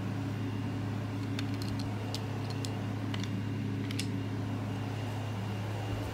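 A steady low machine hum in a small room, with a few faint light clicks in the middle.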